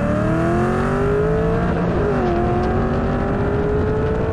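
Cammed, stroked Ford Mustang GT V8 with full exhaust and a second-generation Dodge Viper V10 at full throttle side by side. The engine pitch climbs steadily, dips at a gear shift about two seconds in, then climbs again.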